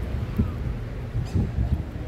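Wind buffeting the phone's microphone, an uneven low rumble, over faint outdoor crowd and street noise.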